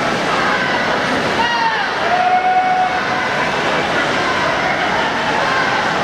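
Steady, echoing din of an indoor swimming pool hall: swimmers splashing through their strokes and spectators' voices, with a held shout about two seconds in.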